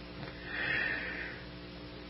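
A pause in a recorded narration: a low steady hum from the recording, with a faint soft hiss swelling briefly about half a second in.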